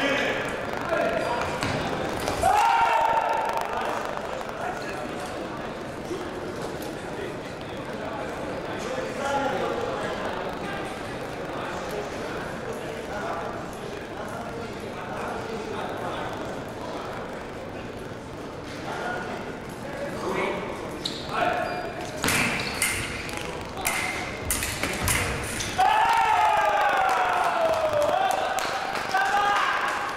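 Fencing hall ambience with background chatter. About three-quarters of the way through there is a rapid flurry of sharp clicks and knocks from foil blades meeting and feet stamping on the piste. Just after it comes a loud, drawn-out shout falling in pitch, a fencer's yell after the touch; a similar shout comes about two seconds in.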